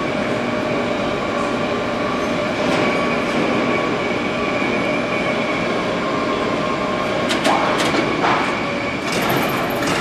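Assembly-plant floor noise: a steady machinery drone carrying a thin held whine, with a few sharp metallic knocks near the end.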